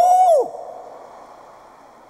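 A man's short, high 'ooh!' of disgust, one voiced cry rising then falling in pitch over about half a second. After it comes only faint background noise dying away.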